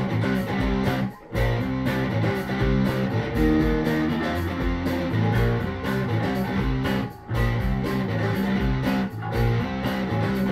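A rock band's instrumental intro, with electric guitar and electric bass playing together. The whole band stops briefly three times: about a second in, near seven seconds and near nine seconds.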